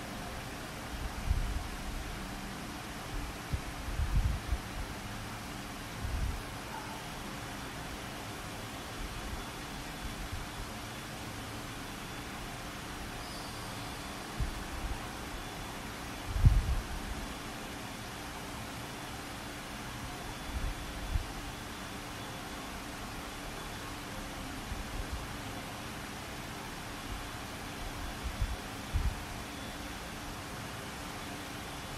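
Steady hiss of an open recording line with nobody talking. It is broken by a handful of short, irregular low thumps, like bumps on the microphone, the loudest about midway through.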